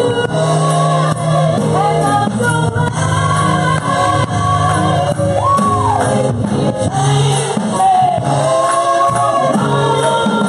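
Live gospel praise-and-worship music: women singing into microphones over a drum kit and electric keyboard. The singing is loud and steady, with one held note sliding up and back down about halfway through.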